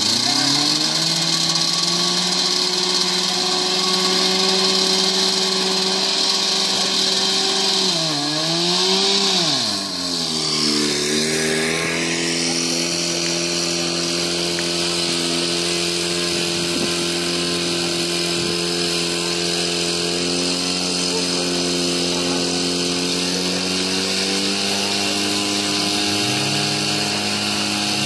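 Portable fire-fighting pump's petrol engine running at high speed. Its pitch sags and recovers about eight to ten seconds in, then it runs steady under load while the pump feeds the hoses.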